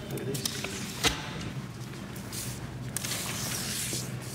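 Gloved hands handling and sliding sculpture sections across a floor platform: a single knock about a second in, then a soft rubbing, shuffling hiss, over a steady low room hum.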